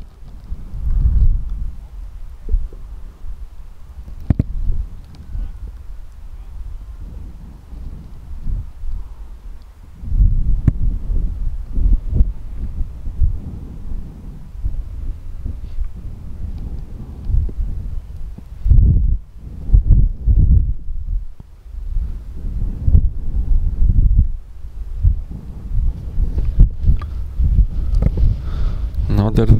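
Wind buffeting the microphone in gusts: a low rumble that swells and drops throughout.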